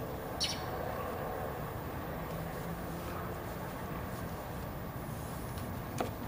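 A steady low background rumble with no distinct events.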